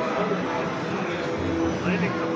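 Indistinct voices of people talking in a hall, over a steady background drone.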